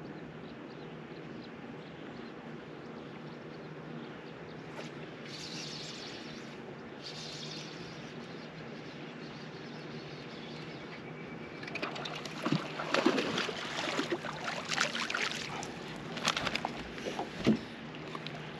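Quiet open-water background with a faint low steady hum, then from about twelve seconds in a hooked bass splashing at the surface in a run of irregular, loud splashes as it is fought in to the boat.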